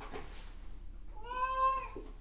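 A single cat meow about a second and a quarter in: one short pitched call that rises, holds briefly and falls away, preceded by a soft rustle.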